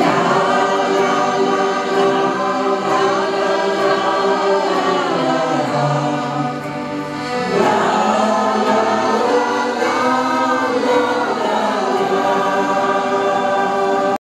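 Mixed shanty choir of men's and women's voices singing a Dutch song in harmony, with accordion accompaniment. The voices ease off briefly about six seconds in and come back in fuller a moment later.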